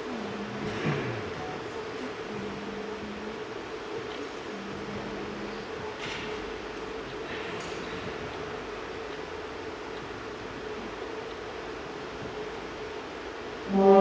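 Hall room tone before a wind band piece: a faint steady hum with a few small knocks and rustles. Right at the end the band comes in with its first loud chord.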